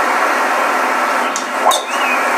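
A steady background hiss, then a single sharp crack of a driver's clubhead striking a golf ball off the tee near the end. The shot is a well-struck drive, called "hammered".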